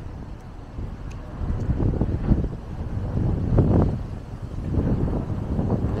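Wind buffeting the camera microphone: low rumbling noise that swells and falls irregularly in gusts.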